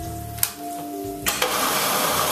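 Countertop blender crushing canned whole tomatoes in a short pulse: the motor starts, and about a second and a half in its sound switches and goes higher, "an octave" up.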